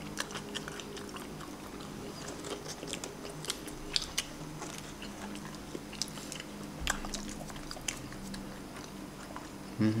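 Close-up chewing and biting of crunchy fried food, with irregular crisp crackles and a few louder crunches about four and seven seconds in. A short "mm" comes right at the end.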